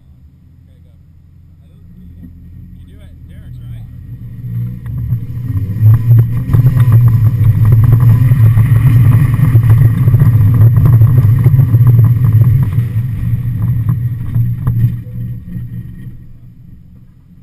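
Mazda Miata's stock 1.6-litre four-cylinder engine pulling hard as the car accelerates. It grows louder over the first several seconds, holds at high revs for about seven seconds, then eases off near the end.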